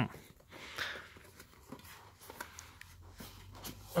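The zip of a toiletry washbag being pulled open, a faint rasp with small clicks, then quiet handling of the bag and the items inside.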